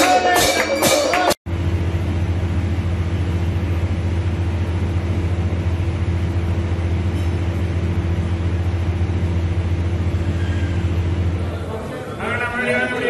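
Music with evenly spaced jingling percussion strikes, cut off abruptly about a second and a half in. Then a steady low hum with a few constant tones holds, easing slightly near the end.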